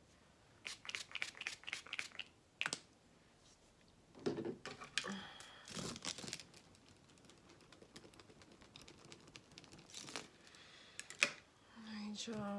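A run of quick sharp clicks and small handling noises, then rustling as a red lace folding hand fan is opened and waved near the face, with a few more clicks near the end.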